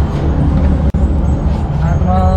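Loud, steady low rumble of outdoor street noise, with a brief cut in the sound just under a second in.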